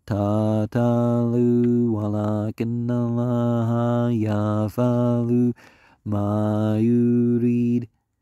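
A man reciting the Quran in Arabic, chanted in long held phrases on a low, nearly level pitch with short breaks for breath.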